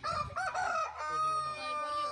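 A rooster crowing once: a broken opening part, then a long held note that sinks slightly in pitch.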